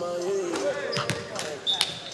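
Several basketballs bouncing irregularly on a gym floor, with voices in the background.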